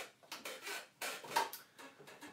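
Plastic bottle handled and moved about on a wooden table: a few light knocks and rustles, the sharpest about one and a half seconds in.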